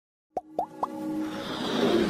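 Intro sting for an animated logo: three quick plops, each a short upward pitch sweep about a quarter second apart, followed by a swelling whoosh that builds as the music comes in.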